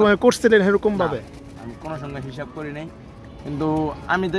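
Domestic pigeons cooing in their wire cages: soft, low coos, clearest about two seconds in, after a man's voice at the start.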